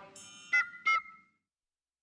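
The end of a folk-style music track: the last chord fades, then two short, bright notes about half a second apart close it, each ringing out briefly.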